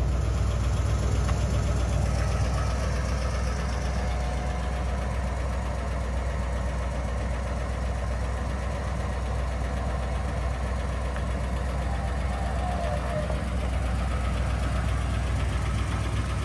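1962 Oldsmobile Starfire's Rocket V8 idling steadily with a low, even rumble while the power convertible top mechanism runs and folds the top down.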